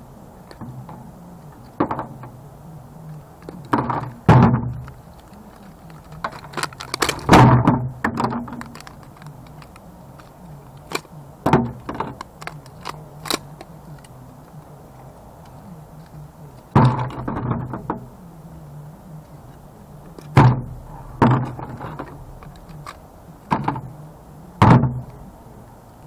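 Hard plastic housing of a copper-wound coil from a CRT monitor being pried and broken apart by hand, with irregular sharp cracks, snaps and knocks every second or two and short quiet gaps between.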